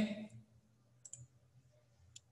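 A computer mouse clicked twice in quick succession about a second in, faint and sharp.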